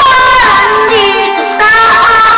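A high voice singing a song over instrumental backing, holding a long note with vibrato; a brief break about one and a half seconds in, then the next sung note begins.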